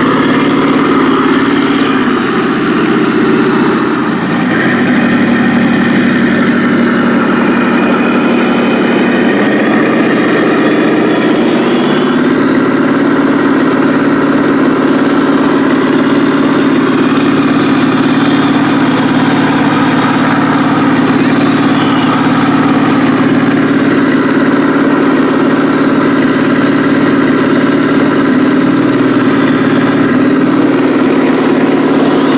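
Remote-control model Leopard 2 tank's sound unit playing a simulated tank engine running, a steady drone whose pitch shifts a few times as the tank drives.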